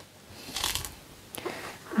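A peeled torpedo melon being split and handled on a wooden cutting board: one short wet rustle of the flesh about half a second in, then a faint click.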